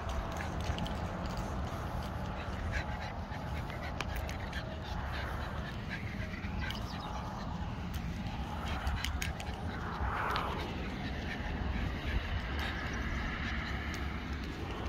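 A dog sniffing at muddy ground, short snuffling breaths on and off, the strongest about ten seconds in, over a steady low rumble.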